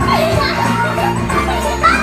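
Children's voices calling out and chattering over steady background music.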